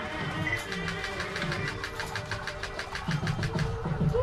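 Temple wedding music, kettimelam style: fast, even drum strokes about seven a second under held notes. This is the drum roll played as the thali is tied.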